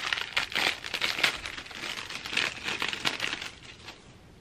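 Packaging crinkling and rustling in irregular crackles as it is handled and opened to get at a pair of hair clips, dying away near the end.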